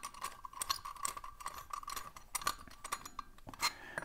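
Faint small metallic clicks and light scraping as a brass key turns a threaded bolt inside a brass padlock, loosening it so the lock body spreads apart to reveal its keyways. Near the end, a light clink of brass keys.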